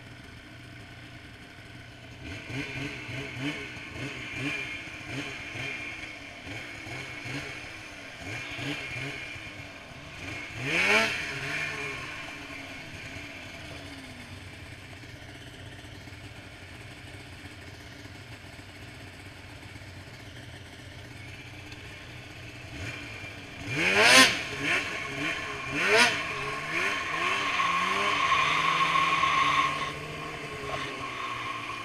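Snowmobile engines revving as sleds ride past on a snowy trail, the pitch sweeping up sharply with each pass: once about a third of the way in, then twice close together near the end, the first of these the loudest. In the last few seconds an engine holds a steady high drone.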